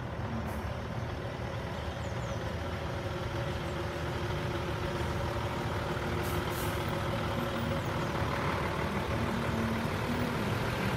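Diesel engine of a Scania flatbed crane lorry running as it drives slowly up and past, growing steadily louder as it nears. A short hiss of air brakes comes about six and a half seconds in as it pulls up.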